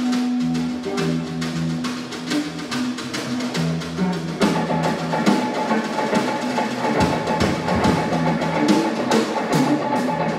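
Live instrumental frevo rock: guitarra baiana (electric mandolin) and electric guitar playing over a busy drum kit. The sound grows fuller about halfway through.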